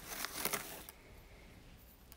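Faint handling noises of a spoon and ingredients at a blender jar: soft rustling with a couple of light taps, dying away after about a second to near silence.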